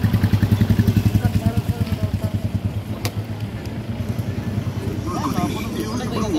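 An engine idling close by, a rapid low throb that is strongest in the first two seconds and then eases, with faint voices near the end.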